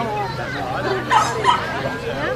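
A dog barks twice in quick succession, short and sharp, about a second in, over a background of people talking.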